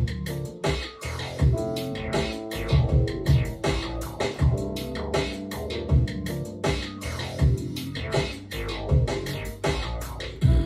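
Electronic music track: a pattern of deep kick-drum hits under held synth keyboard notes, played over studio monitor speakers. The keyboard part is played live on a MIDI keyboard controller.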